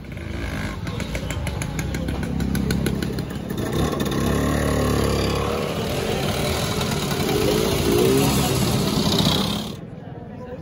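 Classic two-stroke scooters riding past one after another, each engine rising and falling in pitch as it passes. The sound cuts off suddenly just before the end.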